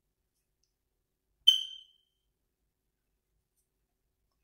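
A single sharp click with a short, high-pitched ring, about one and a half seconds in.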